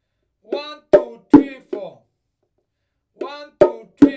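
Bongos played by hand: a four-stroke cell played twice, the first and fourth strokes soft ghost notes and the second and third sharp accented strokes, the second on the small drum and the third on the big drum.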